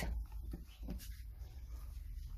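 Quiet shop room tone with a low rumble and a couple of faint light taps as a cardboard pack of transfer paper is handled and set back on the shelf.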